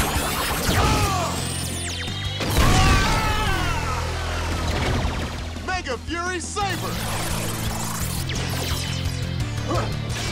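Action-show soundtrack: music over steady sustained bass notes, with sweeping whooshes and a loud crashing hit near three seconds, and a brief wavering vocal shout around six seconds.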